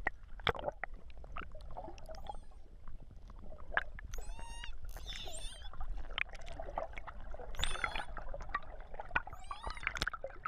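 Pilot whales vocalising underwater: four short whistle-like calls that waver in pitch, from about four seconds in, over a running series of sharp clicks.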